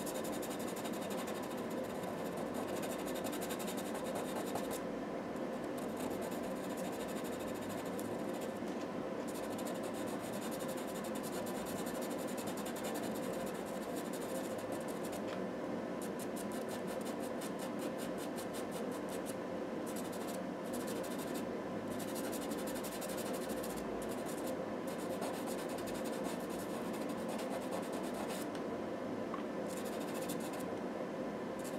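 Pastel pencil scratching across paper in short, repeated hatching strokes, at times in quick runs.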